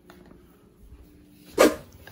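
Faint room tone, then a single short, sharp bark-like sound about one and a half seconds in.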